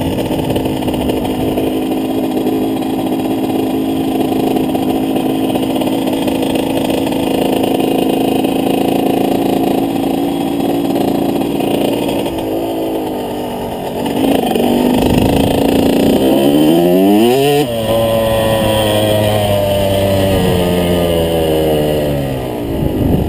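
Dirt bike engine running steadily under the rider, then revving up with a rising pitch about two-thirds of the way through, dropping suddenly and holding at a lower pitch.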